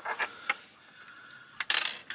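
Small plastic clicks of a brick-built model car being handled and set down on a tabletop, then a loose plastic piece pops off and clatters onto the table near the end. The piece is a known weak spot on the model that keeps coming off.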